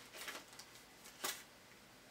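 Faint handling noise as a small snack cake is broken apart in the hands: a soft rustle in the first half second, then one short crackle a little over a second in.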